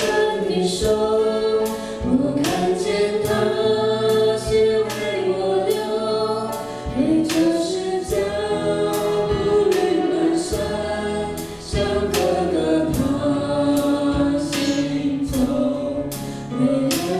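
Worship band playing a Mandarin praise song: several singers with microphones singing together in long, held phrases over piano, acoustic guitar and a drum kit keeping a steady beat.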